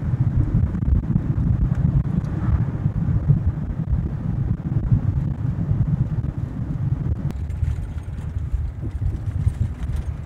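Truck driving, heard from inside the cab: a steady low rumble of engine and road noise, a little quieter in the last few seconds.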